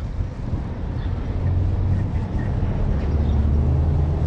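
Low, steady outdoor rumble that grows a little louder in the second half.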